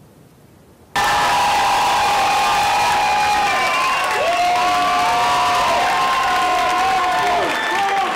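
A large audience cheering, whooping and applauding, cutting in suddenly about a second in, with many long held shouts overlapping throughout.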